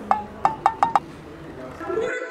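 Five quick, light clinks in the first second, each with a brief ring.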